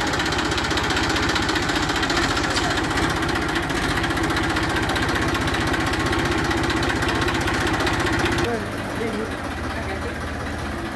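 TAFE 45DI tractor's diesel engine running steadily with a fast, even knock. Near the end the sound turns a little quieter and duller.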